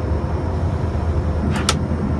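Steady low rumble of an airliner cabin in flight, heard from inside the lavatory, with one sharp click near the end from the lavatory door latch.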